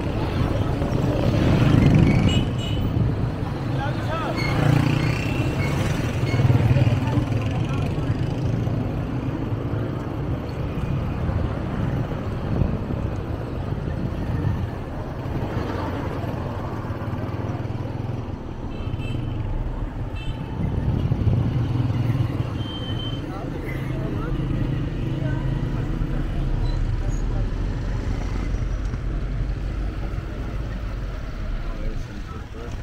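Street traffic heard from a moving vehicle: engines running steadily, with motorcycles and auto-rickshaws going by.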